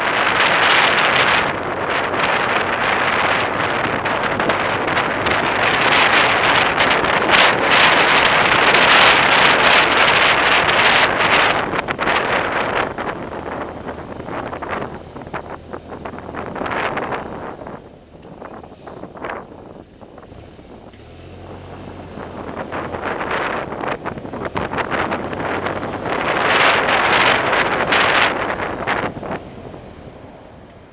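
Wind rushing over the microphone of a camera on a vehicle riding through city traffic, loud while moving at speed, dropping away for a few seconds past the middle as it slows, swelling again, then fading near the end.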